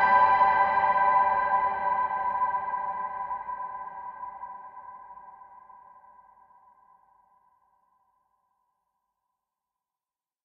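Soundtrack music: a held, sustained chord that fades away over about seven seconds until it is gone.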